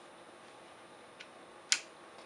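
A sharp plastic click from the power rocker switch of an OMRON NE-C801KD compressor nebulizer being pressed, about three-quarters of the way in, with a fainter tick shortly before it.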